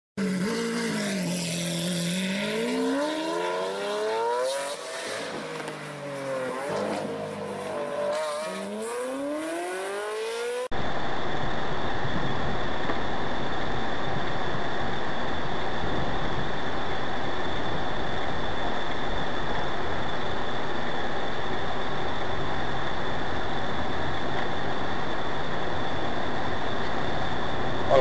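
A racing-car sound effect: an engine revving up and down in sweeping pitch glides, with tyre squeal, cutting off abruptly about ten seconds in. Then steady road and engine noise inside a moving car, with a thin steady high whine, heard through the car's dashboard camera.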